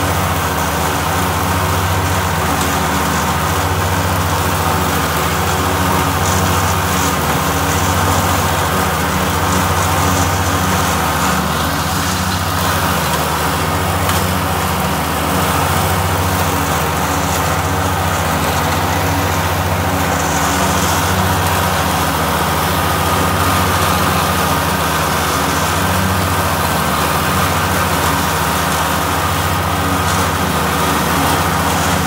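A Yanmar SA221 compact tractor's three-cylinder diesel engine runs steadily under load while driving a rear-mounted DM150 rotary mower through tall grass.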